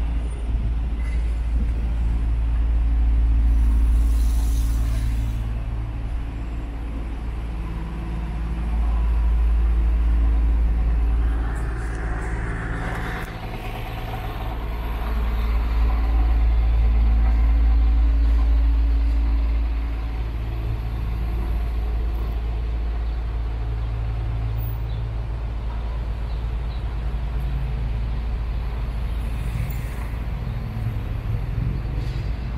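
City street traffic: engines of passing and idling vehicles, among them a delivery box truck, rising and falling in three swells. A short air-brake hiss comes about four seconds in.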